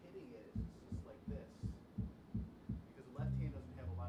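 A bass plucking a run of short, evenly spaced low notes, about three a second, then two longer held low notes near the end, as the band eases into a tune.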